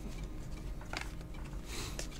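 Glossy trading cards handled in the hands, faint: a small click about a second in and a brief slide of card against card near the end.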